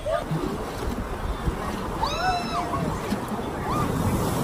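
Steady rushing of water at the bottom of a waterslide, with a short, high-pitched cry from a voice about two seconds in and a brief, higher call near the end.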